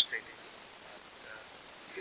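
A brief pause in a man's speech, filled by faint high-pitched background hiss, with the tail of a word at the very start.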